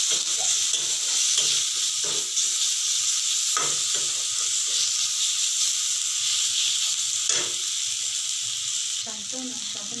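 Chopped tomatoes and spice masala sizzling in oil in an iron kadai, stirred with a metal ladle that scrapes and clinks against the pan three times.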